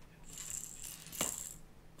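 Trophy Cat Kitty Calls catfish rattle on a rig being shaken, rattling for about a second and a half with one sharper clack near the end.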